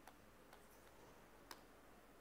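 Near silence with three faint, sharp clicks, the clearest about one and a half seconds in.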